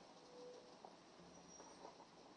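Near silence: faint room tone, with a couple of weak brief tones.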